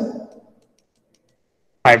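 Speech over an online class call: a man's voice trails off, then about a second and a half of dead silence, then another voice starts near the end.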